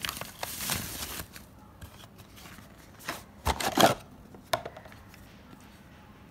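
Paper bag and cardboard packaging rustling and crinkling as a metal sunglasses case is lifted out, loudest in a burst about three and a half seconds in, followed by a short tap.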